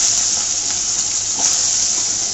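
Sliced potatoes sizzling in hot oil in a pan: a loud, steady hiss of moisture boiling off the freshly added vegetables.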